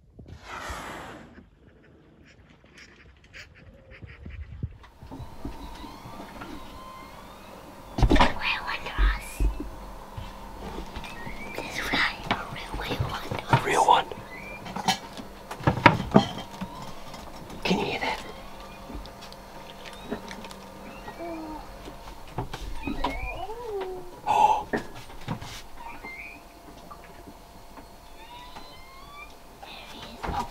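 Humpback whale sounds heard inside a sailboat's cabin: squeaky calls that slide up and down in pitch, with a few deeper moans. Several loud knocks and thumps come in among them.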